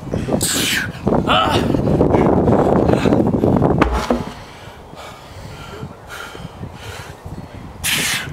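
Large tractor tire being flipped by hand: a man straining with loud breaths and grunts as he lifts and pushes the tire over, a low thud as it lands just before four seconds in, then quieter heavy breathing while he rests.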